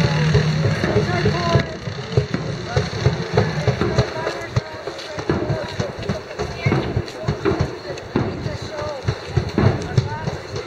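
Crowd of street marchers: scattered, indistinct voices with many short clicks and knocks. A vehicle engine hums at the start, and the sound drops away suddenly about a second and a half in.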